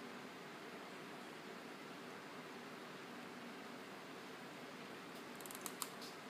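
Faint steady room hiss from quiet handling at a table, with a few light clicks near the end.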